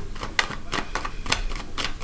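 A quick, irregular run of light clicks or taps, about four or five a second, like typing.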